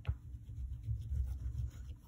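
Oil pastel being worked by hand on paper over a wooden board: low, uneven rubbing and scrubbing, with a small tap right at the start.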